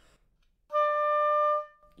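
Oboe sounding one sustained D (the D above middle C's octave, near 590 Hz) with the standard half-hole fingering. It starts about two-thirds of a second in, holds steady for about a second, and then tapers off.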